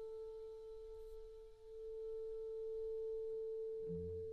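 Clarinet holding one long, soft note, close to a pure tone, that thins a little about halfway through and then swells again.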